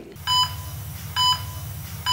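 Heart-monitor beeps: a short, high beep about once a second, twice here, over a low steady hum.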